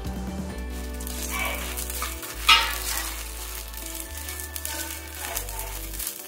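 Sago pearls and crushed fox nuts stirred with a spatula in a nonstick pan, sizzling faintly in ghee, with one louder, sudden sound about halfway through. Soft background music plays underneath.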